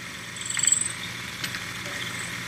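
Small motor-driven mini conveyor running: a steady low mechanical hum from the motor and belt, with a brief faint high whine about half a second in and a few light ticks.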